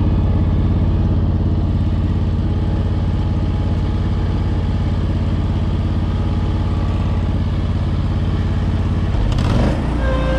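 Ventrac 4500P compact tractor's engine running steadily. About nine seconds in, the engine note shifts briefly.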